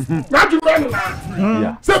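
Speech only: a voice talking loudly and animatedly, with no other sound standing out.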